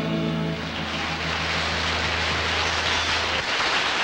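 A band's final chord ringing out, its bass note held until about three and a half seconds in, while applause rises soon after the start and carries on steadily.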